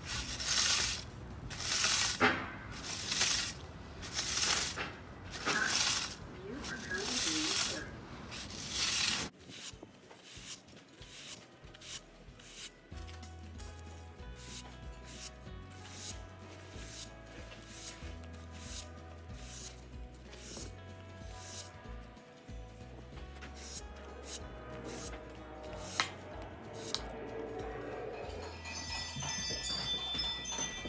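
Push broom sweeping light snow off brick pavers, quick repeated scratchy strokes at an even pace. About nine seconds in it cuts to background music with a steady beat and bass line, with chimes near the end.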